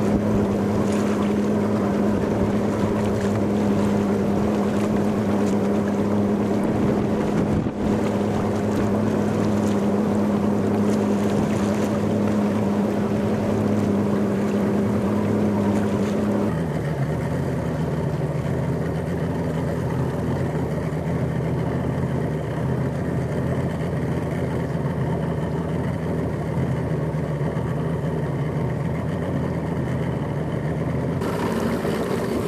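Motorboat engine running steadily under wind and water noise. About halfway through, its note drops to a lower, steady pitch.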